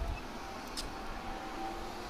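Kawasaki GTR1400's inline-four engine and the wind of riding, heard as a faint, steady low rumble and hiss while the motorcycle rides on.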